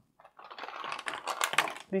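Scratchy rustling with many small clicks, from a makeup brush being worked over the skin to buff in liquid foundation.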